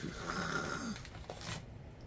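Crinkling of a foil chip bag as a hand rummages inside and pulls out a chip, with a few sharp crackles about a second and a half in. A brief low throaty hum falls in pitch during the first second.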